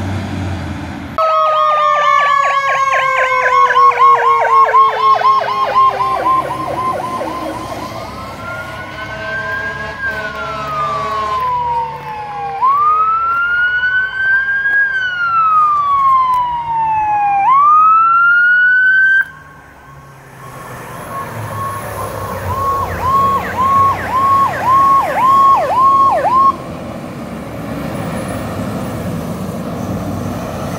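Fire truck sirens. A fast yelp comes in about a second in, with a second tone falling slowly in pitch beneath it, then turns into a slow rising-and-falling wail that cuts off suddenly about two-thirds of the way through. A short burst of fast yelp follows and stops shortly before the end, with heavy truck engines running underneath.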